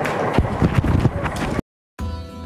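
A lecture-hall audience knocking on their desks, a dense patter of many irregular knocks over a general hubbub, cut off suddenly near the end.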